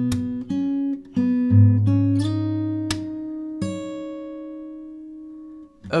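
Acoustic guitar played fingerstyle with a capo: plucked bass and melody notes with sharp percussive slaps on the strings. About two seconds in, a last chord rings out and slowly fades over roughly three seconds before it is muted.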